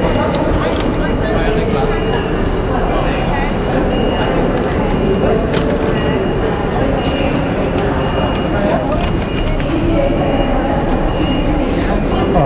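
Busy railway station concourse ambience: indistinct crowd chatter over a steady rumble of background noise, with scattered clicks and footsteps.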